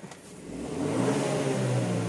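Car engine starting: it flares up over about a second, then settles toward idle.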